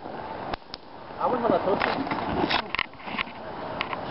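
Backyard wrestling: a series of sharp slaps and thuds as the wrestlers strike each other and a body goes down on the padded mat, with a person's voice in the middle.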